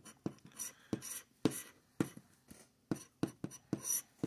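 A scratch-off lottery ticket being scratched with a handheld scratcher tool: a run of short, irregular scrapes across the card's latex coating.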